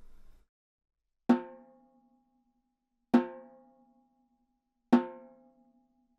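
Three single full strokes on a chrome-shelled snare drum, spaced about two seconds apart. Each is a sharp stick hit on the head, then a short ringing decay.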